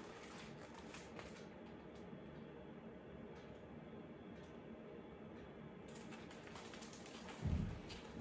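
Quiet room tone with a few faint light clicks from a hardcover picture book being held open in the hands, and a soft low thump near the end as the book is lowered.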